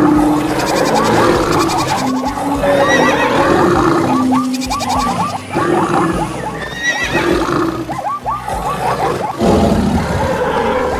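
Many animal calls layered together for an animal stampede, with short calls repeating rapidly throughout, over music.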